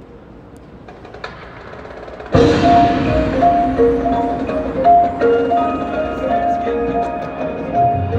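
Marching band music, soft and sparse for the first two seconds, then the full ensemble comes in suddenly with loud held chords while marimbas and other mallet percussion play repeated notes over them.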